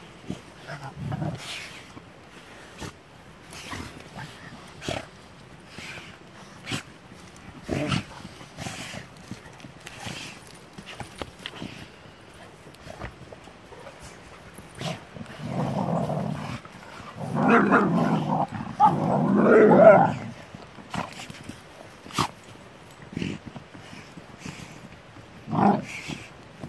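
Pit bulls growling as they play-fight, loudest in a rough stretch of a few seconds past the middle and again briefly near the end, with scattered short clicks and rustles between.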